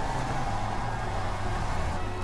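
Steady rush of a waterfall, with a low droning tone underneath that steps back and forth between two notes.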